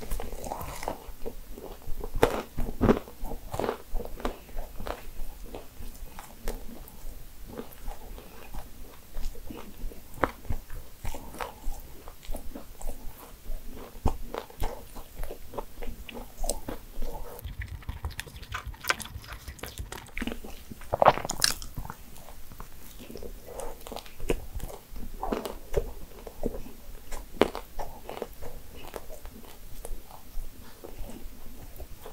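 Close-miked biting and chewing of a nut-studded financier, with irregular crisp crunches as the nuts break. The sharpest crunch comes about two-thirds of the way through.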